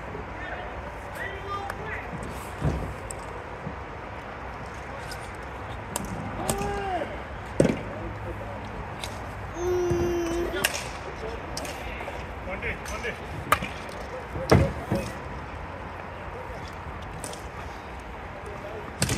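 Ball hockey game play: sticks clacking and hitting the ball, with sharp knocks now and then on the court and boards. A few short shouts from players come through, about six and ten seconds in.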